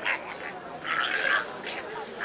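A boy's shrill, animal-like cries in several short bursts, the sounds of a boy in a fit.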